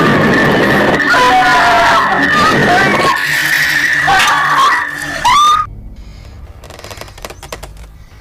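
Film soundtrack of a struggle: a loud steady high whine under dense noise, with cries and screams that bend in pitch over it. About five and a half seconds in it cuts off suddenly to a quiet low rumble.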